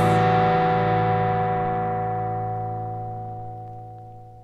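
Final chord of a rock song. The full band cuts off at the start, leaving one distorted electric guitar chord ringing and slowly fading away.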